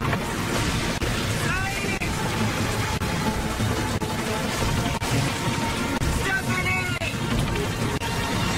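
Film soundtrack of a night storm: a steady rush of rain and wind under background score music, with a voice calling out twice, about two seconds in and again near the seventh second.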